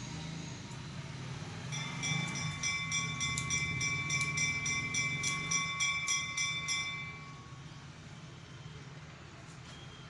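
Barber's scissors snipping hair in a quick steady run, about three snips a second for some five seconds. A steady high ringing tone sounds along with the snips and fades just after the last one.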